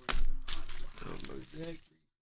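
A sudden thump, then a rustle, as a foil trading-card pack is set down on a padded table mat, followed by a person's voice from about a second in.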